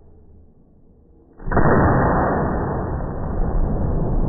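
A KelTec KSG 12-gauge pump-action shotgun fires a single slug about a second and a half in, in an enclosed indoor range. The blast overloads the recording, leaving a loud, muffled noise that lingers afterwards.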